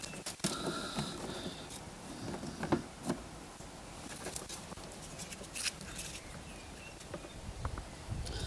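Faint handling noise: a few scattered clicks and rustles as hands move cables and pick up a small plastic battery meter.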